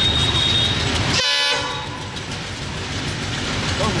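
Diesel locomotive-hauled passenger train running toward the listener, a steady noise of engine and wheels on the rails. A short, high pitched horn-like blast sounds about a second in.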